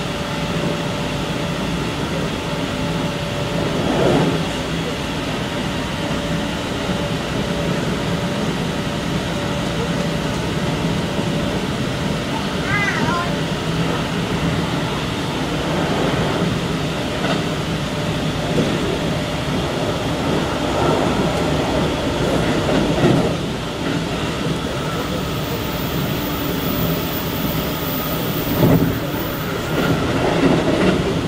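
Keikyu electric train running at speed, heard from inside its rear cab: a steady rumble of wheels on rail with a steady tone through the first half. Short knocks from the rails come at intervals, and a brief squeal sounds near the middle.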